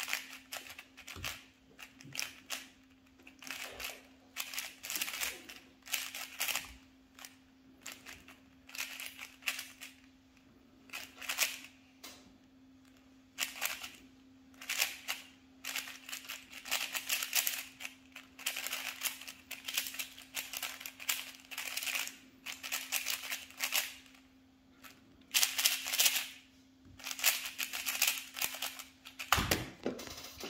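Plastic speed cubes being turned fast by hand: rapid bursts of clicking and clacking turns with short pauses between them.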